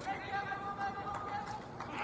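A drawn-out shout from a spectator in the stands, held on one pitch, over the low hubbub of a ballpark crowd.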